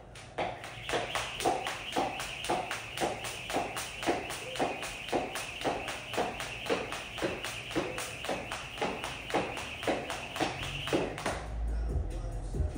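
Jump rope skipping: the rope slaps the rubber floor mat about four times a second, twice for each landing of the feet, with a steady whirr of the rope through the air. The rhythm stops shortly before the end.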